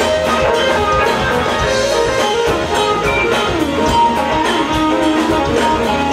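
Live band music: an electric guitar picked with single notes over a drum kit, some notes gliding up and down in pitch.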